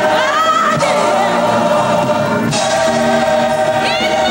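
Gospel choir singing held notes, with a female lead voice sliding up and down in pitch over them. The sound gets brighter about halfway through.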